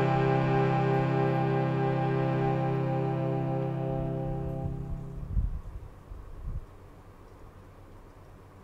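Harmonium holding a sustained chord with a slight wavering, fading out about five seconds in. Two soft low thumps follow, then faint room tone.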